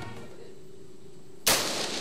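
A single gunshot about one and a half seconds in: one sharp, loud crack with a short ringing tail.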